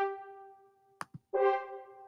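MuseScore's French horn playback sound playing one sustained note each time a note is clicked into the score: one note fading out, a short click about a second in, then the same horn note again, fading away near the end.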